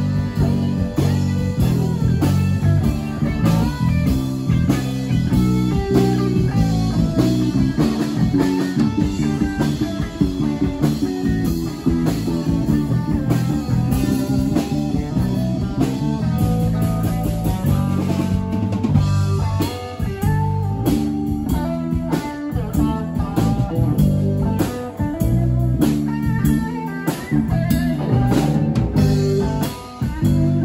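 Live rock band playing an instrumental passage: electric guitar over electric bass and a drum kit, loud and continuous.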